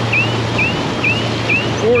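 Fishing reel's drag squealing in short rising chirps, about two a second, as a hooked wahoo strips line off the spool. Under it are the steady drone of the outboard motors and the rush of the wake.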